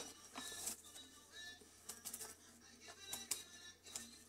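Quiet crinkling and scattered light clicks as a resealable plastic pouch of moringa powder is opened and a spoon dipped in, over faint background music.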